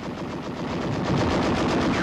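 Rapid machine-gun fire, a continuous rattle of shots that starts abruptly and grows louder about a second in.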